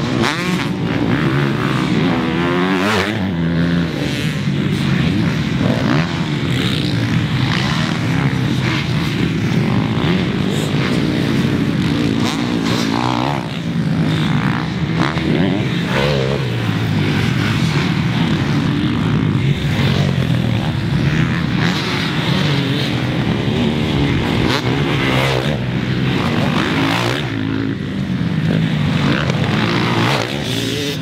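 Several motocross bikes racing one after another on a dirt track, engines revving up and down continuously with overlapping rises and falls in pitch as riders accelerate and shift. Near the end a bike passes close by.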